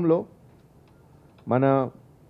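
A man speaking into a microphone in short phrases, with a pause of about a second between them.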